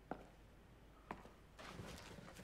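Near silence, with faint short ticks about once a second and a faint rustle starting near the end.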